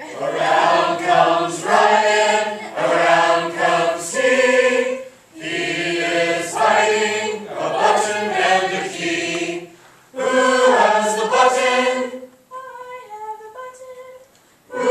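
A group of young men and women singing a children's singing-game song together, unaccompanied, in three phrases with short breaths between them. Near the end a single quieter voice sings a short phrase.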